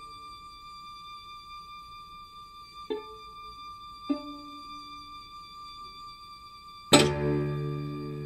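String quartet playing: a quiet high held violin note, two pizzicato plucks about a second apart, then a sudden loud accented chord near the end that rings and fades.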